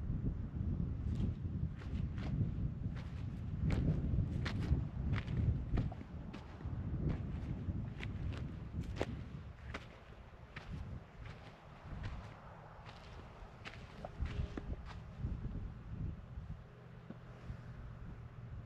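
Footsteps crunching on a dry dirt-and-gravel trail, about one to two steps a second, over a low rumble. The steps grow fainter in the second half.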